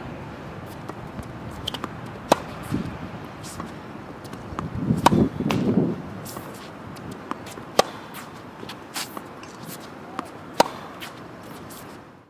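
Tennis ball being struck by racquets in a rally, a sharp pop every two to three seconds with fainter ball bounces between. A brief low muffled sound comes about five seconds in.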